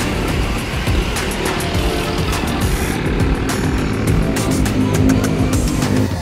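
Wind rushing over the microphone and road noise from a moving bicycle in traffic, under background music.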